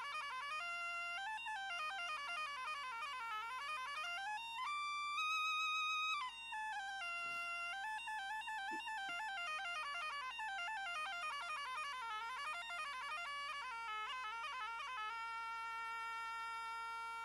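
Asturian bagpipe (gaita) playing a solo introduction to a sung tonada: a winding, ornamented chanter melody over a steady drone. About five seconds in it holds one louder high note for a second and a half.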